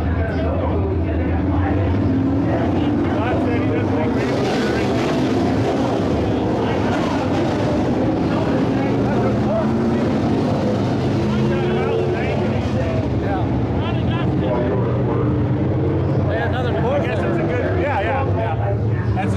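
Several IMCA Modified race cars' V8 engines running together in a steady drone, with people talking in the background.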